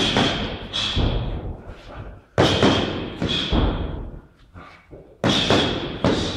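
Punches and kicks smacking into Thai pads, in three pairs of hits a little under a second apart, each hit trailing off in the room's echo.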